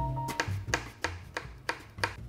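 Kitchen knife chopping on a plastic cutting board, sharp even strikes about three a second, over background music with a steady bass line.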